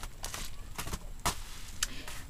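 Rustling of a manila envelope and bubble wrap being handled, with several sharp clicks.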